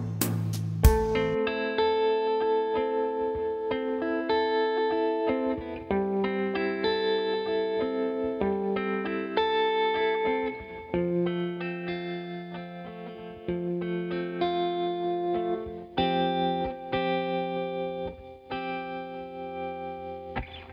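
Guitar part from a music multitrack, heard on its own and run through the Audiority LDC2 optical compressor plugin. It plays held notes and chords that change every second or two. A last drum hit comes right at the start.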